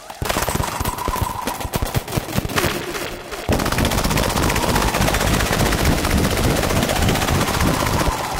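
Patched analog synthesizers (a Behringer Pro-1 with a Behringer 2600 and a Studio Electronics Boomstar 5089) putting out a noisy stream of rapid crackling clicks over a faint high tone while a knob on the Pro-1 is turned. About three and a half seconds in, the texture turns louder and denser.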